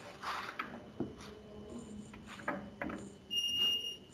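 A high-pitched electronic beep, one steady tone lasting well under a second, near the end, over faint background sounds.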